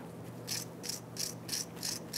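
A hand wire brush scrubbing rust and scale off the threads of a steel brake adjuster screw, in quick short scratchy strokes, about four a second.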